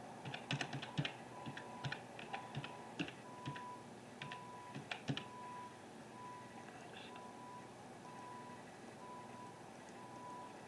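An irregular run of sharp clicks and taps through the first five seconds, then only a faint steady background. A faint high beep repeats about once a second throughout.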